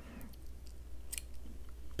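Small scissors snipping through acrylic yarn, a short faint snip about a second in, cutting the working yarn to leave a tail after the round is joined.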